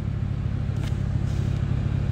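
A car's engine running with a steady low rumble.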